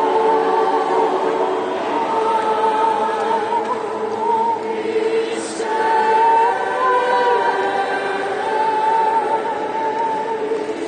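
Mixed choir of men's and women's voices singing long held chords, in the echoing space of a large stone church, with a brief hiss about halfway through.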